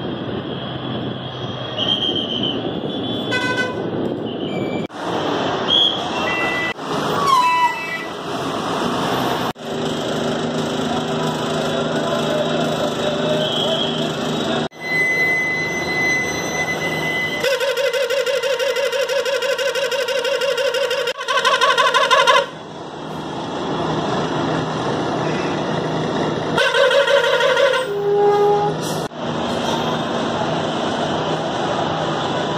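Busy bus yard with bus engines running steadily and horns sounding. A long pulsing horn lasts about five seconds two-thirds of the way through, and a shorter one follows near the end.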